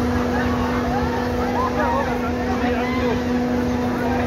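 Funfair din: a steady low machine hum from running ride machinery under a busy babble of many voices and calls.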